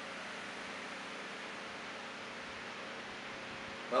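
Steady background hiss of room tone, with no distinct clicks or knocks standing out.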